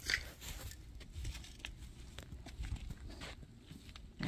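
Footsteps on loose dirt and dry grass: a string of soft, irregular thuds over a faint low rumble.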